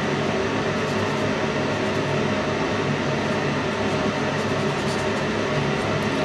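A steady mechanical hum: an even whirring noise with a few constant low tones in it, not changing in level or pitch.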